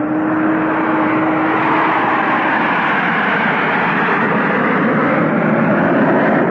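Sound effect of an airliner's engines running loud and steady as the plane takes off and climbs, with a steady hum that fades out about two seconds in.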